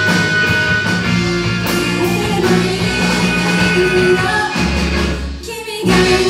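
Live rock band playing with a female lead vocal over electric guitars, drums and keyboard. About five seconds in the full band drops away briefly to a thinner, bass-heavy moment before coming back in loud.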